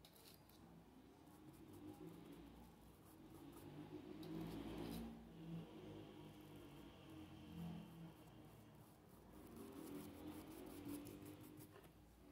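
Near silence with a paintbrush faintly scrubbing thick paint into fabric in short strokes.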